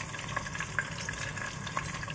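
Ground shallot, garlic and ginger paste frying in hot oil in a pot with bruised lemongrass and galangal: a steady sizzle with scattered small crackles.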